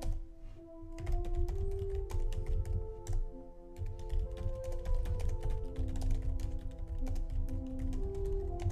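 Soft background music of held notes, with quick irregular computer-keyboard typing clicks over it.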